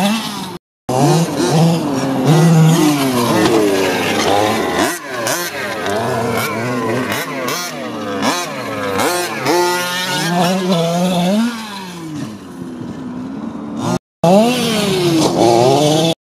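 Two-stroke petrol engines of 1/5-scale RC trucks, a King Motor X2 among them, revving up and down over and over as the trucks drive and jump. The sound cuts out briefly twice, about a second in and near the end.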